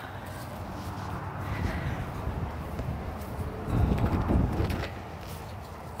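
Low, steady rumbling background noise that swells for about a second around four seconds in, with no clear clicks or knocks.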